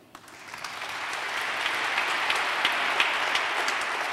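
Audience applauding, swelling over the first second and then holding steady.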